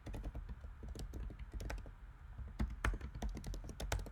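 Typing on a computer keyboard: two quick runs of keystrokes with a short pause a little before halfway through.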